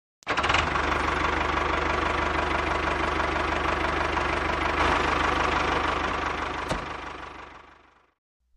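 Tractor engine running steadily, cutting in abruptly and then fading away over the last couple of seconds as the miniature tractor drives off.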